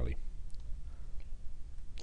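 A couple of faint computer-mouse clicks, about half a second and a second in, over a low steady room hum.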